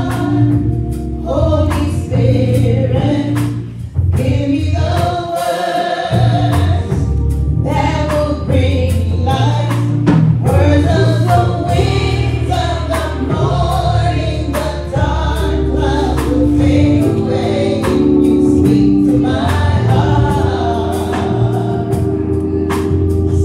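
A gospel praise team of two women and a man singing together into microphones, their voices over sustained low bass notes and regular percussion hits.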